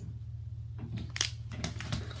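Light handling noises: a few short rustles and clicks as plastic-wrapped card sleeves and the contents of a cardboard box are moved by hand, with one sharp click a little past halfway. A steady low hum runs underneath.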